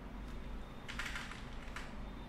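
Keystrokes on a computer keyboard: a couple of faint taps early, then a quick run of taps from about a second in, as the old colour code is deleted from the text file.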